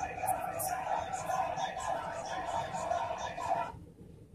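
Muffled voices from a screen's soundtrack, picked up by a phone microphone, cutting off suddenly near the end.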